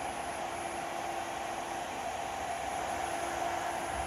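Steady workshop background noise: a constant hum and hiss with a faint steady tone, and no distinct events.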